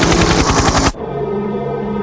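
A rapid burst of machine-gun fire, a fast rattle of shots that cuts off abruptly about a second in. Steady sustained music chords follow.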